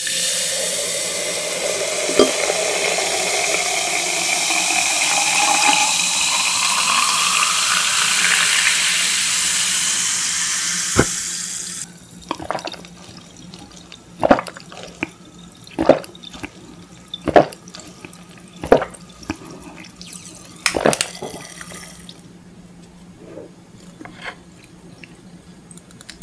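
A drink is poured into a tall glass, fizzing, with a tone that rises steadily in pitch as the glass fills, and the pour stops sharply after about twelve seconds. Then the drink is sipped through a straw, with about six short, sharp swallowing sounds a second or two apart.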